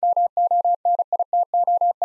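Morse code at 35 words per minute, a single steady mid-pitched beep keyed in short and long marks, spelling out the word "MONITOR".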